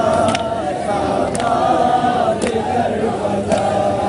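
A crowd of men chanting a Shia mourning lament (noha) together, with a sharp slap about once a second from chest-beating (matam) in unison.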